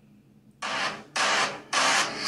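A K-pop music video teaser's soundtrack starting up after about half a second of quiet, opening with three loud, harsh, hiss-like noise hits about half a second each, with short gaps between them.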